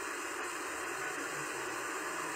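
Steady background hiss with no speech, in a pause in a telephone interview played back from a television.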